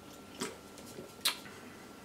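A man drinking from an aluminium can: three faint, short clicks of lips and can, the loudest a little over a second in.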